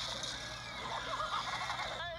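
A cartoon character's wavering, high vocal cry starts about a second in, over a steady hiss.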